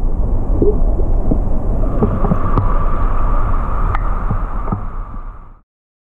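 Water sloshing and gurgling around a half-submerged camera: a loud low rumble with scattered small pops and clicks. It cuts off suddenly near the end.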